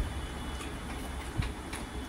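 Chewing and mouth smacking while eating rice and curry by hand, heard as short wet clicks, the clearest about one and a half seconds in, over a steady low rumble.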